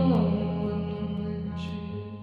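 Hollow-body electric guitar playing sustained, ringing notes over a steady low drone, with a pitch sliding downward just after the start and two brief hissy swishes.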